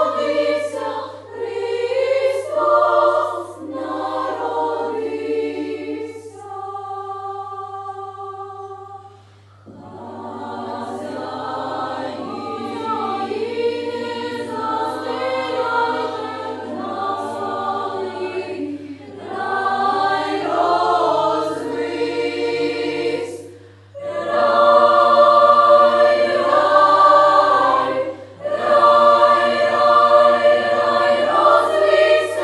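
Children's choir singing Ukrainian carols in several parts. A thinner passage of a few long held notes comes about seven seconds in, then a brief break, and the full choir returns, singing loudest near the end.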